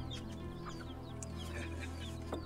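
Quiet background music with held low tones, and chickens clucking and chirping faintly throughout.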